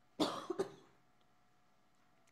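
A person coughing twice in quick succession near the start: one short, sharp cough and then a smaller one.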